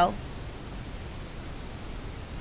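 Steady, even hiss of background noise, with the tail of a spoken word at the very start.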